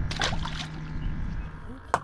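A short splash of water at the surface beside the boat hull about a quarter second in, over a steady low rumble, with a sharp click just before the end.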